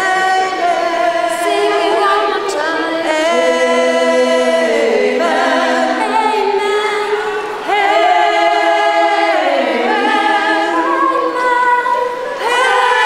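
A choir singing a Christmas song a cappella, led by women's voices on handheld microphones, in long held notes with a short break between phrases a little past halfway.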